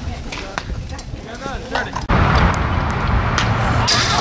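Outdoor baseball-game sound with faint voices. About halfway through it switches abruptly to a louder, steady rumbling noise. Near the end a single sharp smack is heard as the pitched ball strikes the batter.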